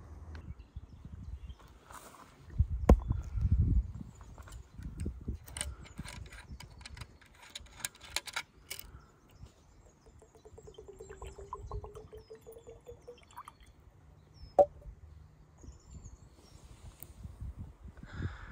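Whiskey poured from a metal hip flask into a small glass, a thin stream whose tone rises over about three seconds as the glass fills. Before it come a few heavy thumps and a run of sharp clicks, and a single sharp click follows the pour.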